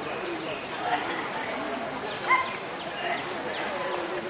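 Birds calling and chirping over a low murmur of voices, with one louder rising call a little past halfway.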